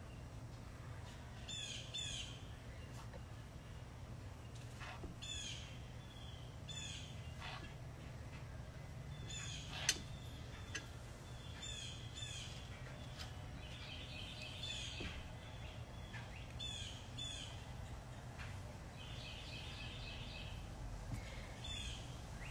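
Faint bird chirps: short high calls, often in pairs, with a few brief trills, repeating every second or two over a low steady hum. One sharp click about ten seconds in.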